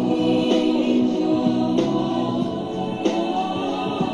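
Background music with sustained sung, choir-like voices and a soft regular accent about every second and a quarter.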